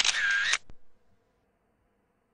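Mobile phone camera shutter sound: one brief synthetic shutter burst about half a second long, then a faint click.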